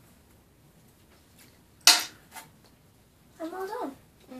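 A quiet room broken by one sharp snap about halfway through, then a fainter tick just after it. This is small handling noise around an injection. A short voiced sound with a rising pitch comes near the end.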